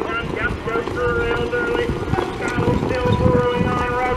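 Voices calling out in long, drawn-out pitched notes, with a rough rumble of wind on the microphone underneath.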